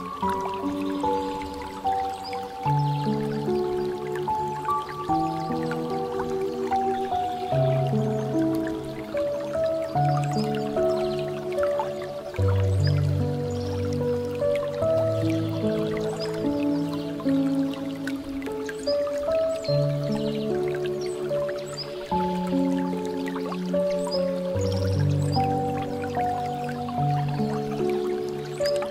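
Piano music playing a melody of held notes over water dripping and trickling from a bamboo fountain spout, small drips scattered throughout.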